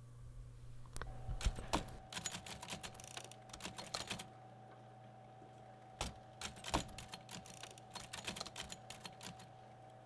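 Typewriter keys striking in two runs of rapid typing, the first starting about a second in and the second about six seconds in, over a faint steady hum.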